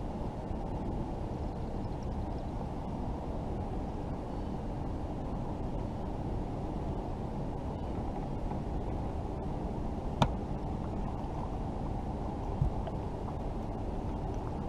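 Steady, muffled low rushing noise on the kayak, with one sharp click about ten seconds in.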